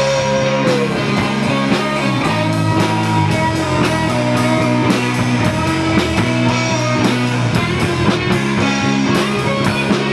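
Live rock band playing an instrumental stretch with no vocals: electric guitars and bass over a steady drum-kit beat.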